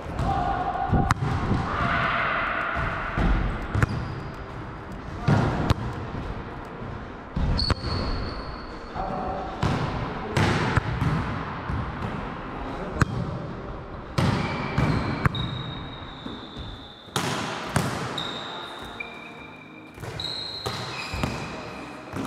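Volleyballs being struck and bouncing on a gym floor, a series of sharp smacks and thuds echoing in a large hall, with short high squeaks of sneakers on the floor now and then.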